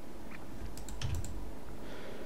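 A handful of light, quick clicks from a computer's keyboard and mouse, about five in a row in the first second and a half, over a steady low room hum.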